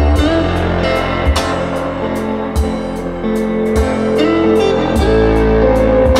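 A song with guitar over a bass line and a steady, regular beat, played back through Wharfedale Linton Heritage three-way loudspeakers in a listening room.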